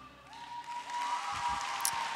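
Audience applauding as the skating program's music fades out, the clapping building from about half a second in. A faint steady high tone runs under it.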